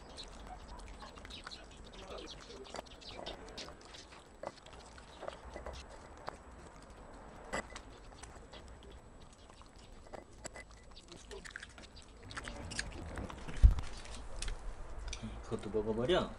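A dog chewing and crunching pieces of vegetable from a small bowl: a long run of small, irregular crunches and clicks. Near the end there is a louder rustling with one heavy thump.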